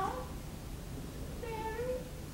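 A high-pitched, drawn-out vocal sound from one voice, slightly wavering, starting about a second and a half in, after the tail of a spoken word at the start.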